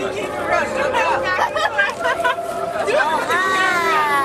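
Several people chatting, with one voice drawn out and falling in pitch near the end.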